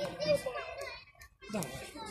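Children's voices talking close by. There is a short lull just after a second in, then speech resumes.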